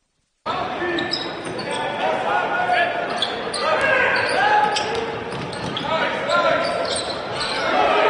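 Live sound of a basketball game in a gymnasium: a ball bouncing on the hardwood amid players' and spectators' voices, echoing in the large hall. It starts suddenly about half a second in.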